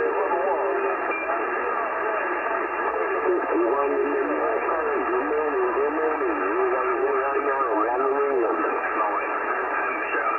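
A pileup of distant CB stations talking over one another on 27.385 MHz lower sideband, received over long-distance skip and heard through a transceiver's speaker. The overlapping voices come with several steady whistle tones and background hiss, all with the narrow, thin sound of a sideband receive filter.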